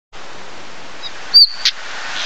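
Male stonechat calling: a high, falling whistle about one and a half seconds in, followed closely by a short, sharp click, the stonechat's whistle-and-tack call. A steady hiss runs underneath.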